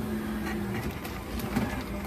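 A self-serve coffee machine running as it dispenses coffee into a paper cup: a steady mechanical hum with the hiss of the pour.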